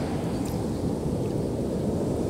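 Steady low rush of ocean surf and wind.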